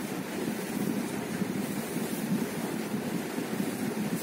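Steady low rushing background noise, with no distinct events.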